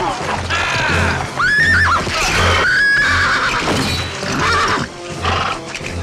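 Horses whinnying during a mounted charge, over a film score with a low pulse beating about twice a second, with men's shouts mixed in.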